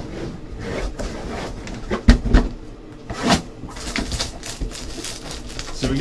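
Cardboard box being handled and opened, its plastic wrap being cut: scraping and rustling with scattered knocks. The loudest are a pair of thumps about two seconds in and a sharp click just after three seconds.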